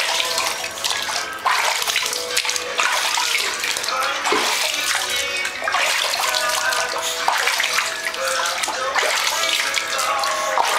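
Water running and splashing in a bathtub as a small papillon dog is washed, with many small splashes throughout.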